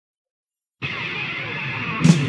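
Silence, then a little under a second in a dense, steady, music-like sting cuts in with the glitching logo of the channel's intro animation. It sounds duller than the rock song that follows.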